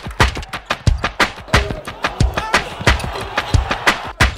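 Music with a heavy, fast drum beat, about three beats a second.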